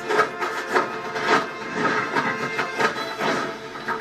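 Kung fu film fight-scene soundtrack playing through a TV: quick strikes and blocks, about three a second, over score music.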